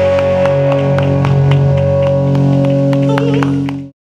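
Live pop-rock band with electric guitars and bass holding a sustained chord while the drums strike repeatedly over it, as at the close of a song. The sound cuts off abruptly near the end.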